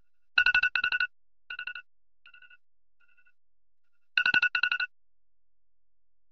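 Smartphone alarm ringing: rapid electronic beeping trills in loud bursts, fading away in fainter repeats, then loud again about four seconds in.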